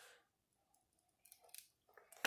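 Near silence, with a few faint, brief crackles of paper about a second and a half in as the printed release paper is peeled back from a diamond painting canvas.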